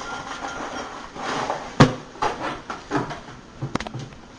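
Dry Cinnamon Toast Crunch cereal poured from its cardboard box into a bowl, rattling in. About two seconds in comes a sharp knock, and a few lighter knocks and clicks follow near the end as the box is set down on the table.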